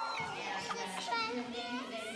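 Many children's voices chattering and calling out over one another.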